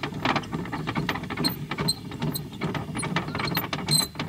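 Irregular metallic clicking and rattling of camping gear being handled and packed away, with a ratchet-like quality.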